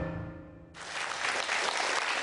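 Theme music fading out, then studio audience applause starting abruptly under a second in and carrying on steadily.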